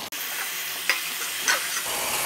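Tamarind paste for pulihora simmering in oil in a kadai, sizzling steadily, with a couple of sharp pops of spattering oil about a second in and again half a second later.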